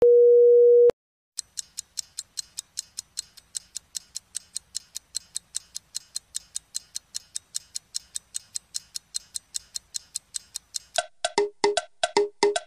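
A single steady beep lasting under a second, then an evenly paced clock-ticking sound effect, about four ticks a second. About a second before the end, chiming pitched notes join the ticks as music begins.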